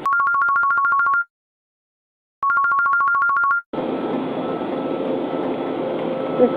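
Electronic telephone-style ringing, a fast warble between two pitches, sounding twice for about a second each with dead silence in between. It is followed by a steady background hum.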